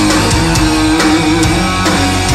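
Doom-metal band playing live: electric guitar chords held over bass and drums.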